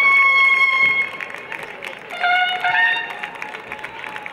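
A brass instrument sounding a call: one long held note for about the first second, then after a short pause two shorter notes, the second higher, over crowd applause.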